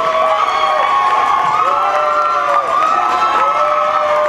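Audience cheering, many high voices holding long, overlapping shouts without a break.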